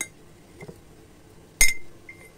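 Metal fork clinking against a glass jar while pieces of boiled pork fat are put into it: a faint tick at the start, then one sharp clink with a short ring about a second and a half in.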